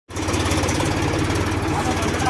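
Mahindra tractor's diesel engine running steadily at low revs, with a regular low pulse.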